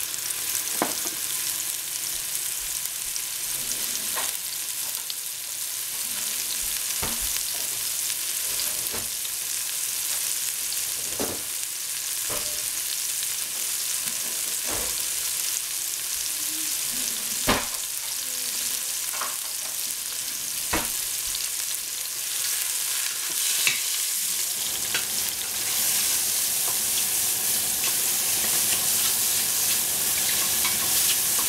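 Sliced shiitake mushrooms sizzling in a stainless steel pot: a steady hiss with scattered pops and crackles. Near the end a wooden spoon starts stirring them and the sound grows a little louder.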